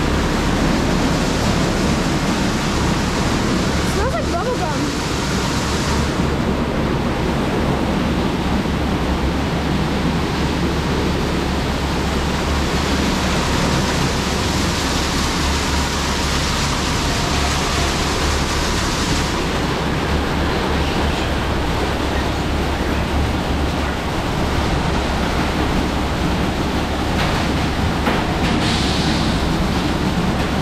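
Rollover car wash gantry working over a pickup truck: spinning soft-cloth brushes and water spray make a loud, steady rushing noise over a low machine hum. The hiss changes in tone a few times as the sprays shift.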